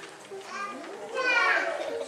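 Children's voices chattering in a large room, with one louder, high-pitched child's call about halfway through.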